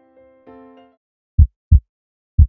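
Soft, sustained music notes fade out, then a heartbeat sound effect: one deep, loud double thump (lub-dub) near the end.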